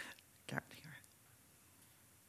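Near-silent room tone, broken about half a second in by a short, faint voice sound.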